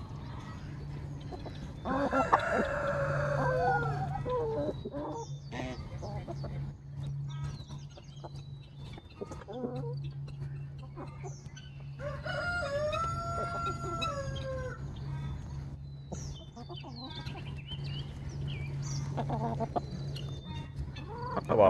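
A rooster crowing twice, each crow a long call of about three seconds, the first about two seconds in and the second about twelve seconds in, with hens clucking between. A steady low hum runs underneath.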